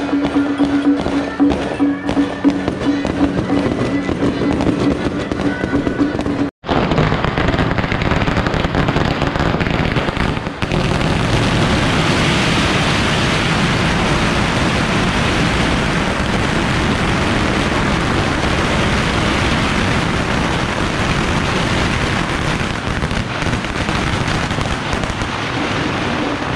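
Firecrackers going off in a long, dense, unbroken crackle, with a held musical tone over the crackling in the first six seconds or so. After a break about six seconds in, the crackle thickens and runs on loud without pause.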